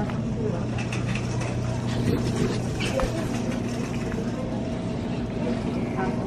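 Supermarket background: a steady low hum with faint voices, and a couple of light clicks about two and three seconds in.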